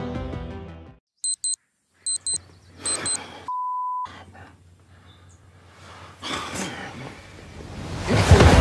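Digital alarm clock beeping in three quick double beeps, followed by one longer steady beep of about half a second. Music fades out just before the beeps and swells back near the end.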